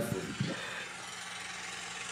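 A steady low hum under an even hiss: room tone between remarks, with the tail of a voice in the first half second.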